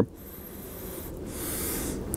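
A long, slow sniff through the nose at an unlit cigar held under the nostrils, smelling its pre-light aroma; the soft airy hiss grows louder toward the end.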